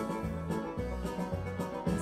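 Instrumental break of a country-style backing track with plucked strings, with no voice over it.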